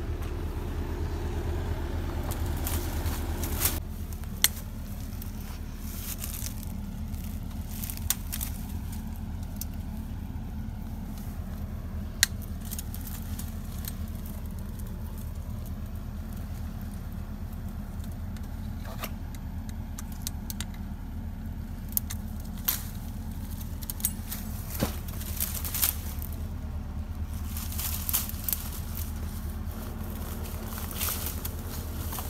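Telehandler engine idling steadily with a low hum, louder for the first four seconds, with scattered sharp clicks and snaps as brush around a fence post is handled.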